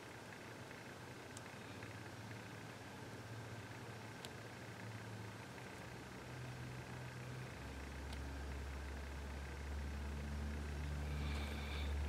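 Quiet room tone with a few faint, small clicks as tweezers set tiny lock pins into a Kwikset lock plug; a low, steady hum comes in a little past halfway.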